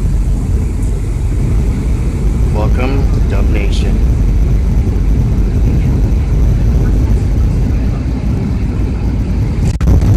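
Steady low rumble of a jet airliner's engines and airflow heard inside the cabin on final approach, flaps extended. Faint passenger voices come through about three seconds in.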